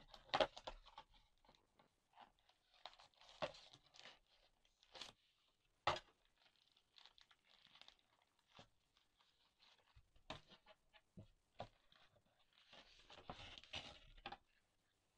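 Cardboard camera packaging being handled: inner boxes and sleeves sliding and knocking, with scattered light taps. The rustling grows denser near the end as paper leaflets are handled.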